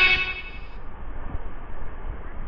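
Background music cutting off in the first moment, then the low, steady rush of sea surf breaking against a concrete breakwater.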